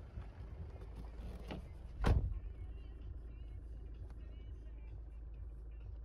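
Hyundai Tucson engine idling with a steady low rumble. A single loud thump comes about two seconds in.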